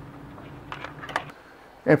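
A few faint clicks and light handling noise from a temperature probe and its cable being handled at a BBQ Guru CyberQ Cloud controller, over a faint steady hum.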